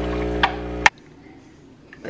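Espresso machine's pump humming steadily while pulling a shot, then stopping abruptly with a sharp click about a second in.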